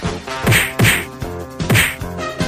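Film fight sound effects: three hard whacks, about half a second in, just under a second in and near the end, over sustained dramatic music.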